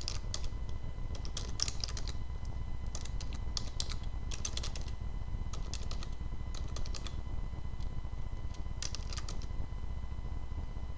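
Computer keyboard typing in short bursts of keystrokes with pauses between them, over a steady low hum.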